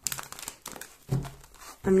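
A tarot deck handled and squared together by hand: a dense run of small papery clicks and rustles as the card stock slides and taps together.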